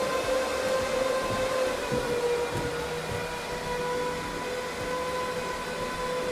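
HPE DL560 Gen10 rack server's cooling fans running fast, a steady rushing sound with a held whine on top. The fans have ramped up because all four CPUs are under full load from a rendering benchmark.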